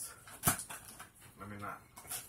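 A single sharp click about half a second in, then quieter scraping and handling as a box cutter is worked at the packing tape of a cardboard shipping box. A short low murmur comes near the end.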